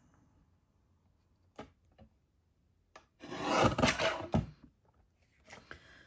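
Fiskars paper trimmer's blade slid along its rail, cutting a strip off a sheet of cardstock: a rasping cut of about a second, a little past the middle, ending in a knock as the blade stops. A few light clicks come before it as the card is set.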